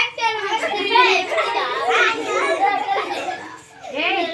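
A group of young children's voices calling out and talking over one another, many at once, with a short lull near the end.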